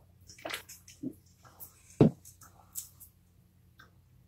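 A person gulping a drink from an aluminium can, with a few short wet swallows about half a second apart. A single sharp knock about two seconds in is the loudest sound.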